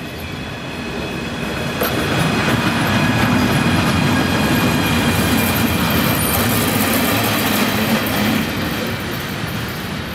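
DB Class 151 electric locomotive running light past at speed: wheels rumbling over the rails with a steady high whine above. It swells from about two seconds in, is loudest as it passes, and eases off near the end as it moves away.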